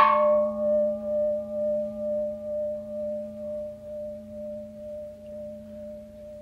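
A single struck, bell-like ringing tone in the music sounds at the start and dies away slowly over several seconds, with a regular pulsing waver in loudness.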